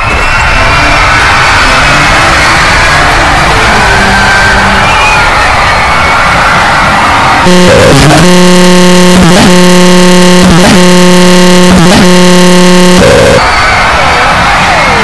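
Very loud, distorted jumble of many audio clips and music snippets playing over one another at once. About halfway through, a loud steady buzzing tone, broken at regular intervals a little over a second apart, takes over for about five seconds before the jumble returns.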